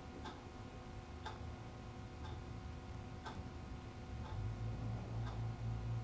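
Analog wall clock ticking faintly, about once a second, with a low hum underneath that grows louder in the last two seconds.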